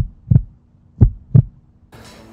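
Heartbeat sound effect: two double thumps, the pairs about a second apart, over a faint steady hum.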